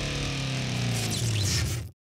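Large bulldozer's diesel engine running steadily, its note easing slightly lower, then cutting off suddenly near the end.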